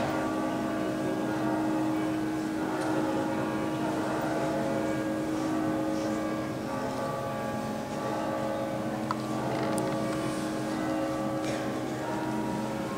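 Church choir singing long, held chords in a resonant church; the chord shifts about halfway through.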